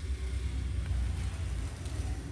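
A low, steady rumble with no speech over it.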